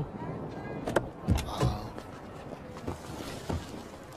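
Low steady rumble of a car interior, with a few soft knocks about a second in.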